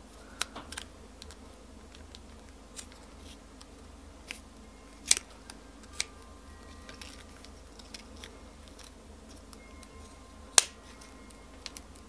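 Scissors cutting small pieces of a plastic milk bottle's neck in half: a few separate sharp snips spread out, the loudest about five seconds in and another near the end.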